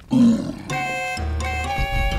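A short, low cartoon dinosaur growl just after the start, followed by background music with held notes.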